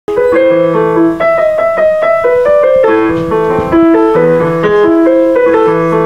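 Yamaha portable electronic keyboard played with a piano voice: a flowing tune of several notes a second over lower bass notes.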